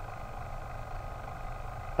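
Steady low background hum and faint hiss: room tone with no distinct event.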